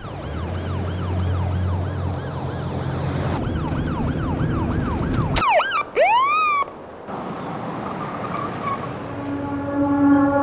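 A siren yelping in a rapid rise-and-fall wail, about two and a half cycles a second, over a low rumble. About five and a half seconds in it breaks off into a few sharp sweeping whoops, then quietens, and music begins just before the end.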